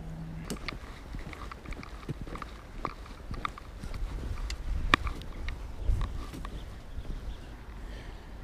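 Footsteps on a footbridge deck: irregular knocks and clicks, a few sharper taps around the middle, over a low rumble of handling noise on the body-worn camera.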